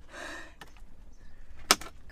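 Hands handling a small storage compartment in a Ferrari 612 Scaglietti's leather centre console: a short rustle, a few light ticks, then one sharp click near the end as the compartment's lid snaps.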